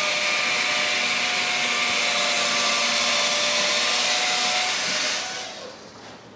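An electric motor-driven appliance running steadily with a high whine over a hiss, switched off about five seconds in and spinning down.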